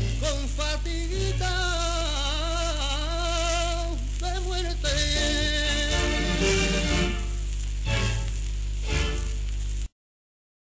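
The closing bars of a Spanish copla played from an old shellac 78 rpm record: a wavering melody line over its accompaniment, with steady surface hiss and crackle and a low hum underneath. The music cuts off suddenly near the end.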